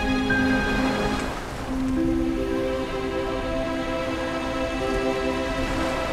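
Background music score of sustained, held chords; the chord shifts about one and a half to two seconds in.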